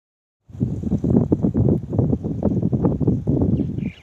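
Wind buffeting the phone's microphone: loud, irregular low rumbling gusts that start about half a second in.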